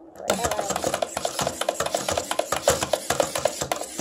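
Hasbro Fantastic Gymnastics toy, its plastic gymnast spun round the bar by the lever mechanism, giving a fast, continuous run of plastic clicking and rattling that starts a moment in.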